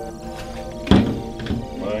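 Background music playing steadily, with a loud thump about a second in and a softer one about half a second later.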